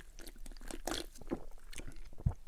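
Close-miked sipping and swallowing from a small glass of drink, with short wet mouth clicks scattered throughout.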